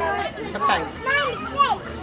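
People's voices talking and calling out, with several pitched voices overlapping.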